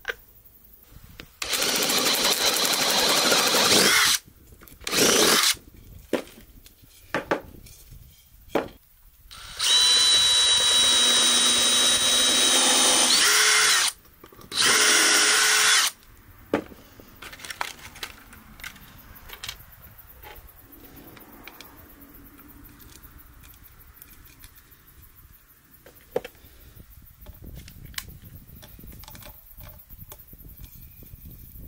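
Cordless DeWalt drill boring into a softwood block in four bursts, two long and two short, now run forward instead of in reverse. The motor whine holds steady through each burst. Light knocks and clicks of tools and wood being handled follow in the second half.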